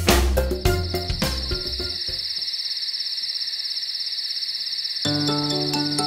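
Children's song music ends in the first two seconds, leaving a cricket chirring sound effect: a steady, high, rapidly pulsing trill. About five seconds in, soft music for the next song comes in under it.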